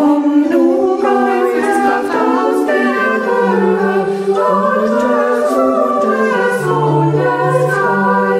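A small virtual choir of women's voices singing a German hymn in parts. Each singer was recorded separately at home, and the parts were mixed together. A lower sustained note comes in near the end.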